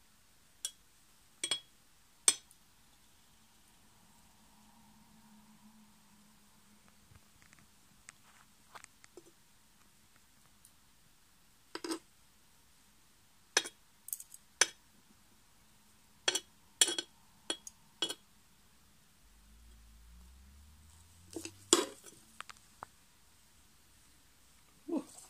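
Long steel tweezers clinking and tapping against the glass of a tarantula enclosure: a dozen or so sharp, irregular clinks in small clusters, with a faint low rumble near the end.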